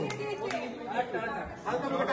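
A group of people's voices chattering over one another, with a couple of sharp clicks early on.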